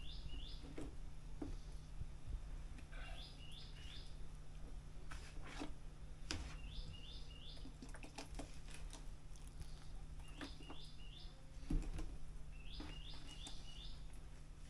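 A small bird calling: a short phrase of three quick chirps, repeated about every three to four seconds. Under it come scattered soft knocks of a spoon stirring flour in a plastic bowl.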